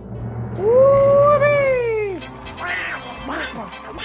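A high-pitched cartoon-character voice calls out one long 'wheee' as the toy Mickey Mouse figure rides down the playset's zip line; the call rises, holds and glides back down over about a second and a half. Short voice-like exclamations follow near the end.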